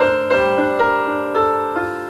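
A Yamaha CP stage piano plays a slow, gentle passage live, each note or chord struck and then left to fade.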